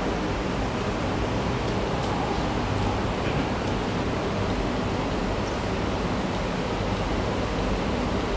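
Steady, even hiss of background noise picked up through an open microphone, with no voice over it.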